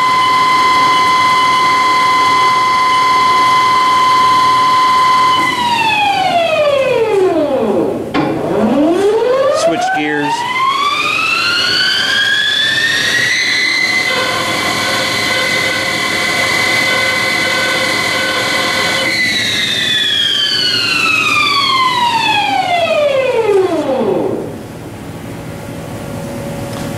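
Haas TL4 CNC lathe spindle drive whining steadily at 250 RPM, then winding down to a stop about eight seconds in. It spins back up to 500 RPM, the whine rising to twice its pitch and holding. Near the end it winds down again to a stop.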